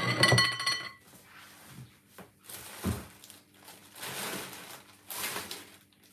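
A glass dish clinks against a hard surface and rings briefly, dying away about a second in. Then come quiet handling noises in the kitchen, with one dull thump about three seconds in.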